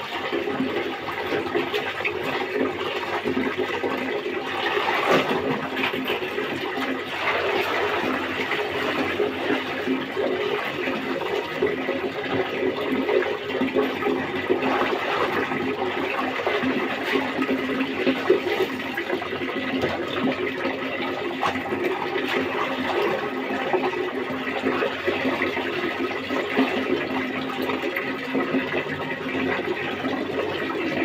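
Water pouring steadily from a wall tap into a basin, with splashing as clothes are rinsed by hand under the stream.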